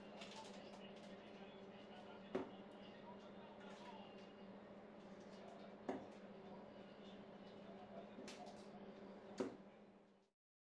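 Three steel-tip darts striking a bristle dartboard, one sharp thud each, about three and a half seconds apart, over a steady low hum.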